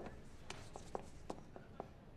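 Faint footsteps on a hard floor: a string of light, uneven taps, six or seven in two seconds.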